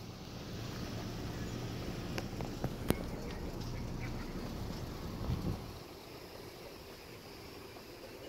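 Police SUV engine running with a low, steady hum. The hum swells slightly and then fades out about five and a half seconds in. A couple of sharp clicks come near the middle.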